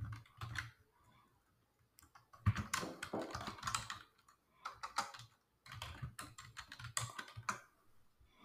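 Typing on a computer keyboard: several quick runs of keystrokes with short pauses between them.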